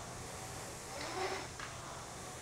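Concept2 rowing machine's air-resistance fan flywheel whirring steadily as it is rowed, with a slight swell about a second in.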